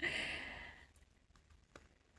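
A single breathy sigh, an exhale that fades out within the first second, followed by a faint click near the end.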